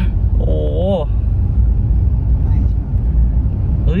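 Steady low rumble of a car driving in town, heard from inside the cabin: engine and tyre noise with no sharp events.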